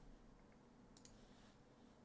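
Near silence, broken by two faint, quick clicks close together about a second in.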